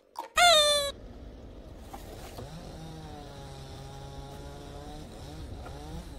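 A short, loud pitched tone sliding slightly downward at the very start. Then low rumbling of wind on the microphone under a steady hiss, with a faint drawn-out low tone for a couple of seconds in the middle.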